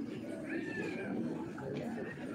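Crowd of people talking, with a short high-pitched wavering cry about half a second in.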